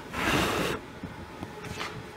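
A person blowing a hard puff of breath at the pilot light of a propane radiant heater, a burst of rushing air lasting under a second that puts the pilot flame out.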